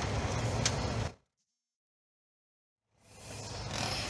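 Keycard slid into an electronic hotel door lock, with a single faint click about two thirds of a second in over a steady low hum and background noise. The sound then cuts out to dead silence for about two seconds, and room noise fades back in near the end.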